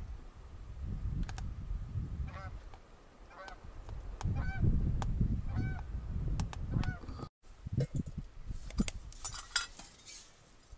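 Canada geese honking, a series of separate calls over a low rumble. After a brief break about seven seconds in, a few sharp clicks and knocks.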